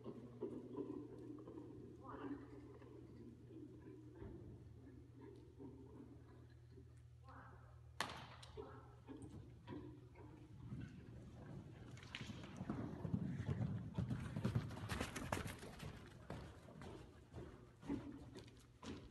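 Hoofbeats of a loose Appaloosa stallion cantering on the soft dirt footing of an indoor arena, a quick run of thuds in the second half. There is a single sharp click near the middle.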